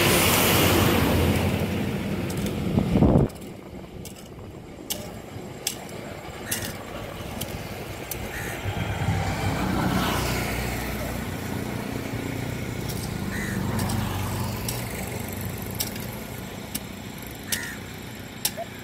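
Motor vehicle engine, loud for the first three seconds and then cut off abruptly, followed by a fainter swell of engine sound passing around the middle, with scattered light clicks.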